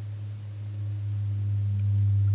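A steady low hum with fainter overtones, growing louder toward the end.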